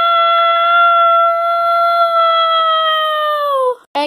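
A child's voice holding one long, loud, high-pitched wail on a steady note that drops in pitch and stops just before the end: an acted cry of dismay.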